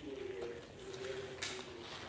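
A faint, steady hummed tone held for most of the two seconds, like a closed-mouth 'mmm', with a faint click about a second and a half in.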